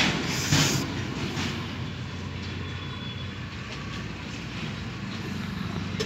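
A steady low mechanical rumble with a faint hum beneath it, unchanging throughout.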